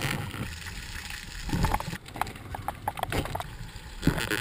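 Muffled knocks, clicks and low rumbling heard underwater through a camera housing as a diver grabs and grapples with a spiny lobster by hand, with a short cluster of knocks about halfway through.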